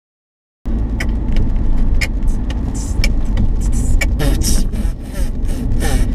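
Loud low rumble of a moving car heard from inside the cabin, starting suddenly about half a second in. Scattered clicks and short hissing sounds run over it.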